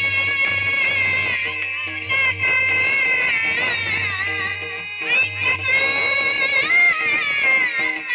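Amplified Marathi devotional gaulan: a high voice sings long, wavering notes over percussion strokes and a low accompaniment that drops out briefly about five seconds in.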